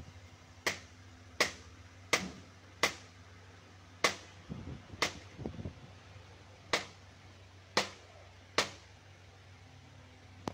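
Claw hammer tapping the metal crimp tabs along a Proton Saga radiator's header, closing them down to clamp the tank tight. About nine sharp metal taps at an uneven pace, roughly one a second.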